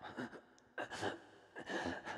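A wounded man gasping for breath, three ragged breaths in quick succession.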